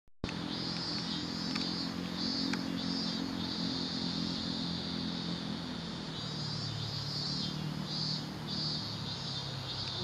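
An engine hums steadily, its pitch dropping about six seconds in, while insects shrill high above in on-and-off pulses.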